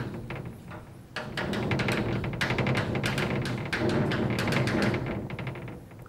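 Chalk writing on a blackboard: a quick run of taps and scrapes, starting about a second in and going on until just before the end.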